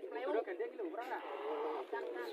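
A crowd of men talking and calling out over one another, several voices overlapping at once, with no clear single speaker. The sound is thin, with no low end.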